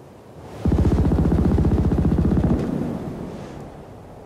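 A loud, low, rapidly pulsing trailer sound-effect hit. It comes in suddenly, holds for about two seconds, then fades away.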